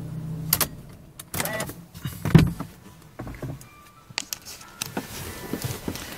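Mercedes-Benz C180 Kompressor's supercharged four-cylinder idling low, then a string of clicks and knocks from handling inside the car's cabin, the loudest a little over two seconds in.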